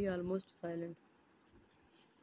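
A person speaking for about the first second, then near-quiet room tone with a faint tick or two.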